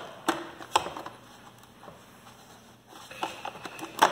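Plastic clicks and handling noise as hands pry the snap-fit hood off a Eureka AirSpeed One upright vacuum. Two sharp clicks come in the first second, then a few fainter ones near the end.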